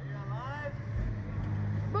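A low, steady machine hum from the reverse-bungee ride's machinery as the capsule is brought down. A short rising-and-falling vocal sound from a rider comes about half a second in.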